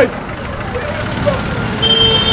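Road traffic and vehicle engines rumbling steadily, with a short vehicle horn toot near the end. A man's shouted "that?" cuts in right at the start.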